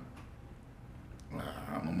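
A short pause in a man's speech, filled only by a low, steady room hum. He starts speaking again about a second and a half in.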